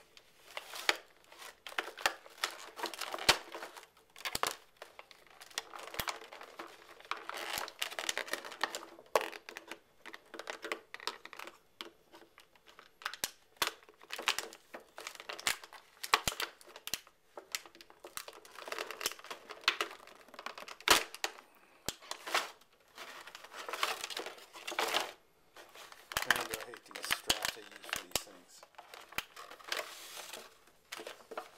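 Clear plastic blister packaging crinkling and crackling in irregular bursts, with many sharp clicks, as it is handled and the plastic straps holding the action figure inside are cut.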